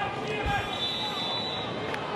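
Stadium crowd murmuring, a steady mass of distant voices, with a low thump about half a second in.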